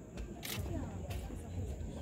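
Faint background voices, with a sharp click about half a second in and a few fainter clicks.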